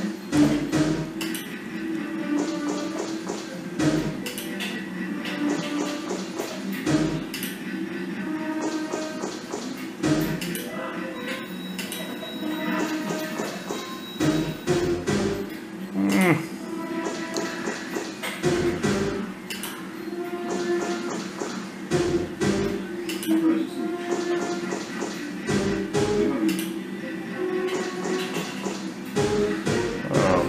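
German arcade slot machine playing its electronic game music, a run of short melodic tones broken by sharp clicks and pinging, chiming effects every second or so as the games spin and stop.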